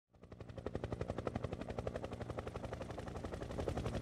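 Helicopter rotor thudding rapidly and evenly, about seven beats a second over a low engine drone, fading in from silence and slowly growing louder.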